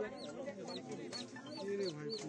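A chick peeping over and over in short, high, arching calls, about three a second, with people talking underneath.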